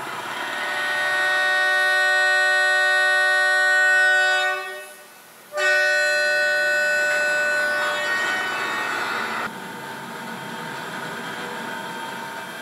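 Locomotive horn sounding two long blasts: a steady chord of several tones held about four seconds, a brief break, then a second blast of a couple of seconds that fades out.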